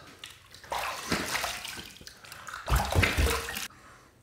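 Water scooped by hand from a filled sink and splashed onto the face to rinse off shaving lather, in two rounds: one about a second in and one near the end.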